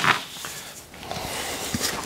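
A small bowl scooping dry milled grain out of a pot: a soft rush of grain with a few faint knocks.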